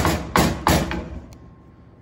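Three sharp knocks in quick succession, a wooden spoon tapped against the rim of a large skillet, fading out within the first second.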